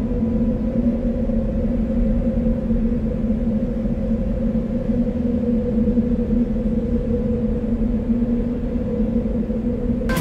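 A low, steady ambient drone in the soundtrack music, one held tone with a rumble beneath, unchanging throughout.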